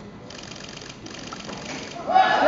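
Rapid, evenly spaced mechanical clicking in two runs, with a short break about a second in.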